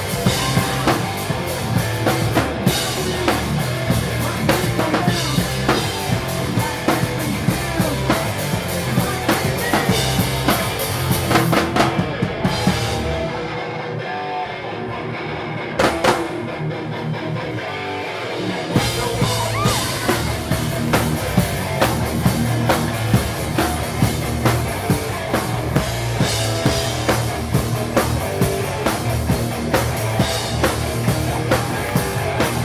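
A hardcore punk band playing live and loud, with distorted electric guitars, bass and a pounding drum kit. About halfway through, the drums and bass drop out for a few seconds, leaving a thinner guitar part with a single hit in the middle. Then the full band crashes back in.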